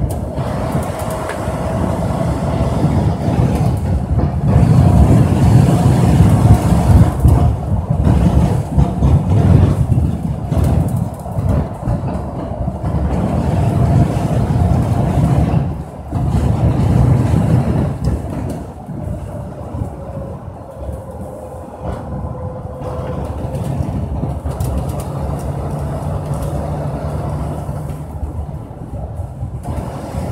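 A vehicle travelling at speed along a road, heard from a camera mounted low on it. A loud, steady rumble of wind and road noise carries a faint tone that drifts slowly up and down in pitch, and the noise eases off briefly about halfway through.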